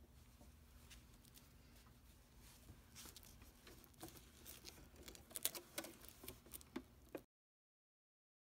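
Faint, irregular small clicks and rustles of fabric and a pinned velcro strip being handled at a sewing machine. They grow busier after about three seconds, then the sound cuts off abruptly about seven seconds in.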